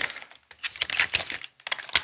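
Rope access hardware being handled on a harness: a run of light metallic clicks and rattles from the descender and carabiners as it is fitted to the rope.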